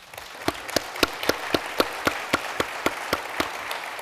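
Audience applause, with one clapper close to the microphone standing out in an even beat of about four claps a second.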